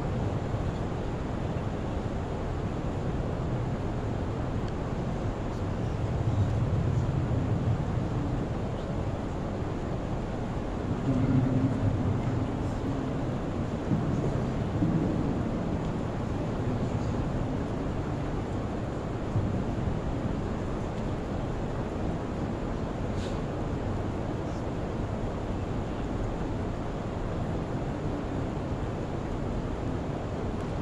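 Steady low rumbling wind noise on the microphone from the draft of overhead ceiling fans, swelling softly a few times.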